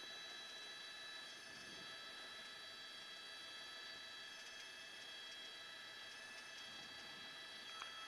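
Faint steady hiss with a few steady high-pitched tones running under it: the open line of a news helicopter's crew intercom between transmissions.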